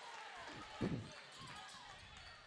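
Faint basketball-gym sound: low crowd murmur with a single short thump a little under a second in, a basketball bouncing on the hardwood court.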